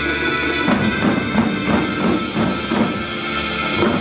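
Wadaiko taiko drums played by a children's ensemble over a recorded backing track. The drum strokes come in under a second in and beat at about three a second.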